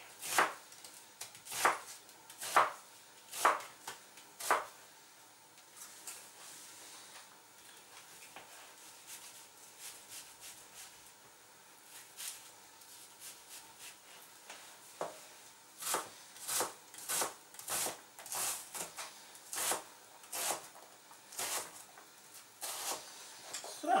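Kitchen knife cutting an onion on a plastic cutting board: a few separate knocks of the blade on the board in the first five seconds, a quieter stretch of slicing, then a steady run of chopping knocks about two a second in the last nine seconds.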